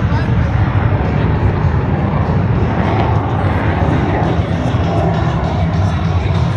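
F-22 Raptor's twin jet engines passing overhead: a steady, loud rumble with a broad hiss and no break.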